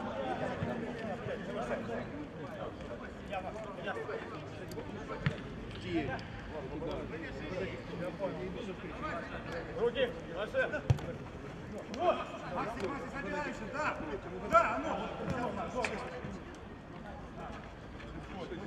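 Men's voices talking and calling close to the microphone during a football match, with a few sudden sharp thuds of the ball being kicked.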